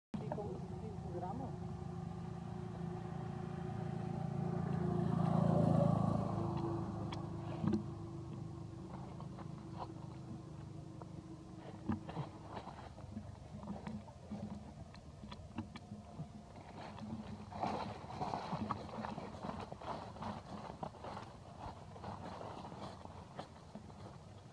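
A motor vehicle running on the road, its hum growing to a peak about six seconds in and then fading, with indistinct voices in the background.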